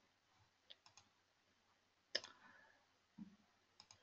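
Near silence broken by a few faint computer mouse clicks, the clearest about two seconds in and a quick pair near the end.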